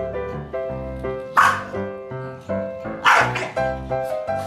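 Corgi barking twice, harsh and loud, about a second and a half apart, over background piano music.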